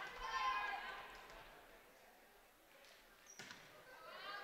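Faint voices in a large gym, then a hush, then one sharp smack of a volleyball being served about three and a half seconds in.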